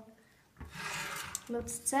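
Water being poured from one drinking glass into another: a short pour lasting under a second.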